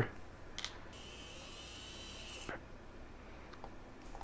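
A small electric screwdriver faintly whirring for about a second and a half as it drives a top-plate screw into a micro FPV quadcopter frame, stopping sharply with a click; a light click comes just before it.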